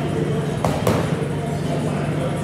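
Two quick boxing-glove punches landing on focus mitts, about a quarter second apart, over a steady low hum.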